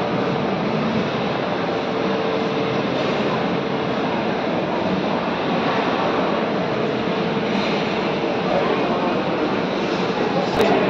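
Steady, even din of a shopping mall interior: air-handling rush blended with distant voices, unchanging in level throughout, with a faint steady hum tone running under it from about two seconds in.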